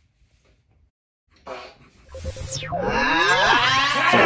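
A dubbed-in machine power-up sound effect: after near silence and a brief blip, a loud, dense layered tone swells in about halfway through, with a quick falling sweep and then a long rising whine that climbs to the end.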